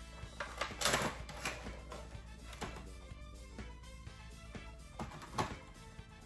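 Cardboard box and packaging being handled, with a few short scrapes and taps clustered early and near the end, over faint background music.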